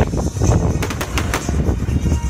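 Aerial fireworks bursting: a rapid run of sharp bangs and crackles, densest around the middle, over a low rumble.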